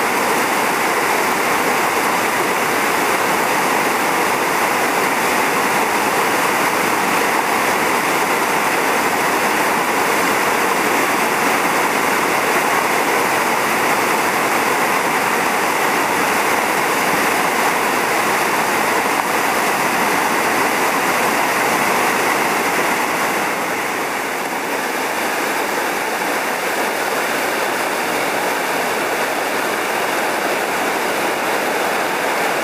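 Steady, loud rushing of a whitewater river pouring over a rocky drop, the river running high with snowmelt and recent rain. The rush eases slightly about three-quarters of the way through.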